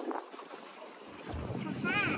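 Wind buffeting the microphone out on an open lake: a low, gusty rumble that swells from about a second in, with a short voice near the end.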